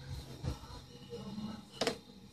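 A long metal pole prodding among furniture: a faint knock about half a second in and a sharper click near the end. Faint background music runs underneath.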